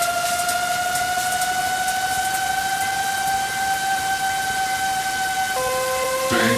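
Electronic dance music breakdown with no beat: a sustained synthesizer tone slowly rising in pitch over a noise wash, like a siren. About five and a half seconds in it steps down to a lower note.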